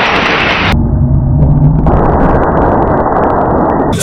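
A loud, steady, rushing rumble of noise with no voices in it. It sounds muffled, and its top end cuts away abruptly about three-quarters of a second in.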